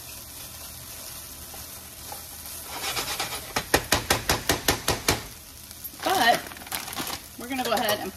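Cauliflower rice sizzling in a frying pan while being stirred with a wooden spoon, followed a few seconds in by a quick run of about a dozen sharp taps of the wooden spoon against the pan. A short hummed 'mm' comes around six seconds in.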